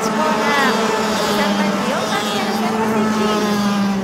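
Two-stroke racing kart engines running on track, their pitch rising and falling as the karts accelerate and lift through the corners, over a steady low hum.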